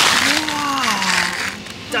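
Crinkling of a plastic frozen-food bag as it is grabbed and pulled from a freezer, loudest in the first half second. A drawn-out, falling vocal exclamation follows.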